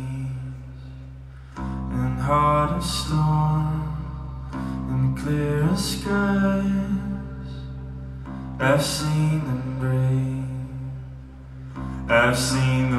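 Live music: a male voice singing long, wavering held notes without clear words over a steady low drone and plucked oud.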